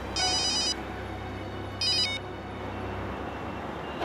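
Mobile phone ringing with an electronic trilling ringtone: one burst at the start and a shorter one about two seconds in.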